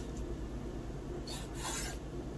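A chef's knife slicing through raw lamb liver and drawing across a wooden cutting board, two quick strokes about a second and a half in.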